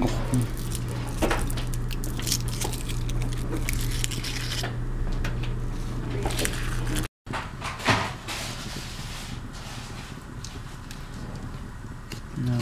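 Plastic candy bag crinkling and rustling, with light clicks as candies are handled over a metal baking sheet, over a steady low hum. After a cut about seven seconds in, quieter, scattered crackles and clicks by a wood fire.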